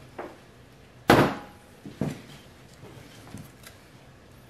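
A few knocks and thumps as plastic soap-batter buckets are handled and set down on a stainless steel worktable, the loudest about a second in.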